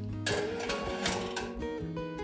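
Metal baking tray sliding onto an oven's wire rack: a scraping rattle that starts suddenly about a quarter second in and lasts about a second, over background music.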